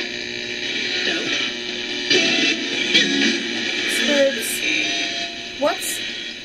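RadioShack 12-150 radio rigged as a ghost box, sweeping AM stations through a guitar amp and pedal: a steady stream of static broken by choppy snatches of broadcast voices and music. It sounds bad, with the harsh, muddy sweep that she says is unusual for this amp and pedal setup.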